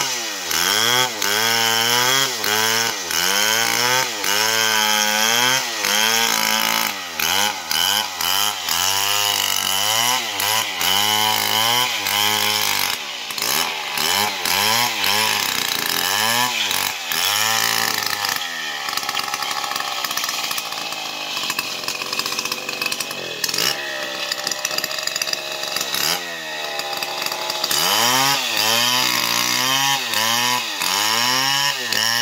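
Stihl MS 070 two-stroke chainsaw ripping lengthwise through a jackfruit log, the engine pitch dipping and recovering about once a second as the chain bogs in the cut and frees up. For a stretch past the middle it runs steadier under load before the dips return near the end.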